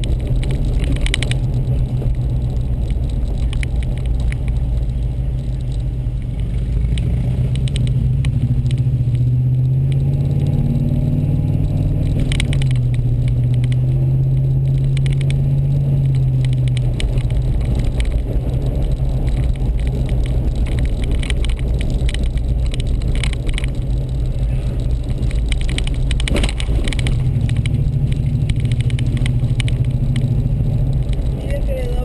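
Car being driven, heard from inside the cabin: a steady low engine and road drone that rises slightly in pitch a few times and settles again, with a few brief rattles or knocks.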